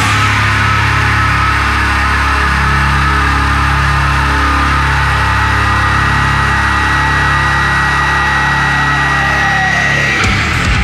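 Heavy rock music: one long held chord ringing out over a steady low drone, with a thin high tone sustained above it and no drum beats.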